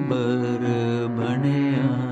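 A singer drawing out a long 'aa' in Raag Ashaaq, a hexatonic raag, with the pitch bending and gliding between notes. A steady low drone accompanies the voice.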